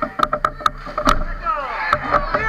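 Ice hockey sticks clacking sharply against the ice and puck, many quick hits in a row, with players' shouting voices rising near the end.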